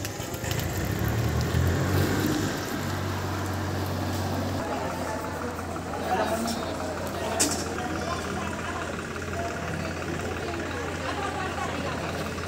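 People talking, with a steady low engine hum underneath.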